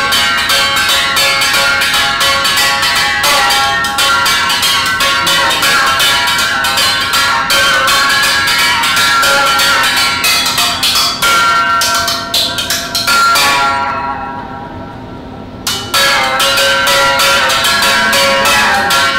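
Homemade berimbau, a wooden musical bow with a tin-can resonator, its string struck rapidly with a stick, giving a ringing, bell-like pitched tone in a quick rhythm. The playing pauses for about two seconds near the end, then resumes.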